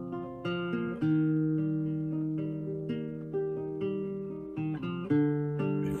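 Classical guitar playing a slow introduction of ringing chords, with new chords struck about every half second to a second.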